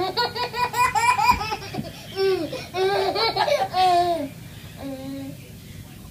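High-pitched laughter: a quick run of short laughs in the first second and a half, then several longer drawn-out laughs, with a last short one about five seconds in.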